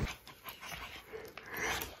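Small dog panting quietly while being petted, in an excited greeting.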